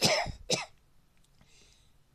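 A man coughs twice: a loud cough right at the start and a shorter one about half a second later.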